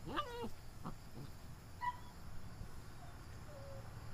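Puppies at play over a chew bone: one puppy gives a high whining yelp that rises and bends in pitch right at the start, followed by a few shorter, fainter squeaky yips.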